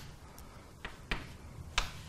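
Chalk striking a blackboard while a diagram is drawn: three sharp taps, two close together about a second in and one near the end.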